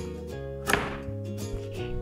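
Background music, with a single wooden knock under a second in as a hinged wooden panel is laid down flat onto a second panel.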